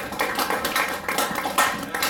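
Small audience applauding: many irregular, overlapping hand claps.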